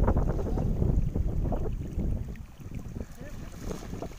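Wind buffeting the microphone, a heavy low rumble for the first two seconds that then eases. Near the end comes a brief splash of shallow floodwater as the cast net is swung out.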